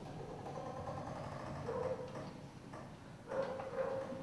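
Quiet, sparse live chamber music: a pedal harp played softly, with a short note on the same pitch sounding twice.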